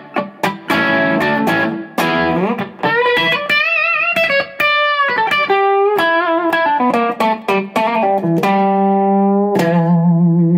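Electric guitar through a Blackstar St. James EL34 50 W all-valve 1x12 combo on its overdriven channel with the gain at 12 o'clock, picked up by a room mic. A lead phrase: short picked notes, a rising bend, notes with vibrato, and near the end a long held note.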